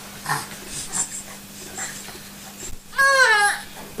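Baby giving a short, loud cry that falls in pitch, about three seconds in, after a couple of faint small noises.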